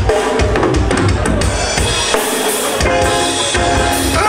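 Live reggae band playing, with a drum kit's bass drum and snare hits driving over electric bass and keyboard lines.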